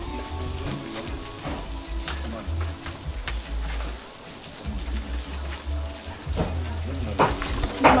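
Hot umu stones hissing and crackling on the food as they are shifted with wooden sticks, with scattered sharp clicks of stone knocking on stone.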